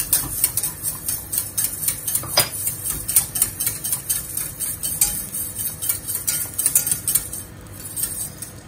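Wire whisk beating a cream sauce in a stainless steel saucepan, its wires clicking rapidly against the sides and bottom of the pan. The clicking eases off near the end.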